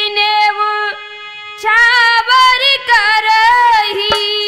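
A woman singing a Hindi Ramayan katha folk song, drawing out long held notes. She breaks off for about half a second around a second in, then sings on.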